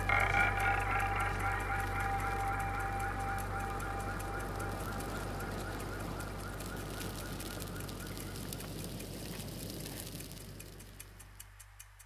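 Ambient film soundscape: a low steady drone with wavering high tones, slowly fading out. Near the end, faint clock-like ticks come in at about three a second.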